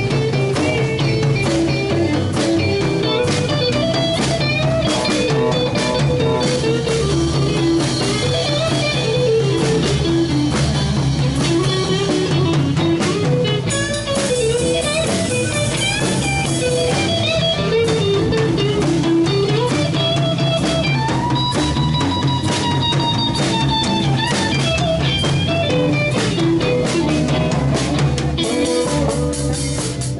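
Live blues-rock boogie played by a small band: a drum kit keeping a steady beat with cymbals under electric guitar lines, without singing. A long held lead note sounds about two-thirds of the way through.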